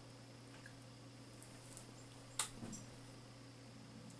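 Faint steady low hum, with one short, sharp sound from the dogs playing on the couch about two and a half seconds in.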